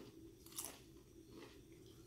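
Faint crunching of a jalapeño tortilla chip being chewed, with one clearer crunch about half a second in.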